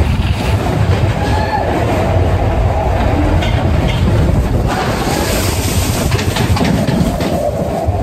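Matterhorn Bobsleds roller coaster sled running fast along its tubular steel track: a loud, continuous rumble and rattle of the wheels, with a wavering whine underneath.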